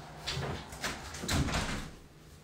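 An irregular run of clicks and knocks, several a second, the heaviest one with a dull low thump about a second and a half in.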